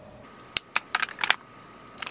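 Metal lipstick cases clicking and clinking against one another and against a clear acrylic organizer as they are handled and slotted in: a quick run of sharp clicks from about half a second in, pausing, then starting again near the end.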